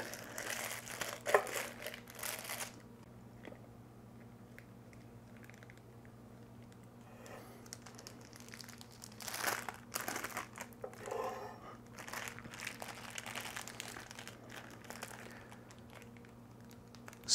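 Plastic zip-top sandwich bag crinkling as it is handled, in bursts with quiet gaps between, over a faint steady low hum.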